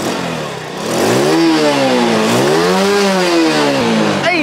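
Yamaha Lagenda 110 underbone motorcycle's carburetted single-cylinder four-stroke engine revved twice with the throttle, its pitch rising and falling back each time.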